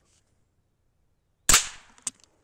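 A single shot from a Chiappa Little Badger single-shot break-action rifle, a sharp crack about one and a half seconds in that dies away over a fraction of a second.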